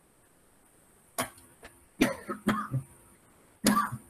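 A man coughing in a series of short, sharp coughs: one about a second in, two close together around two seconds in, and a last one near the end.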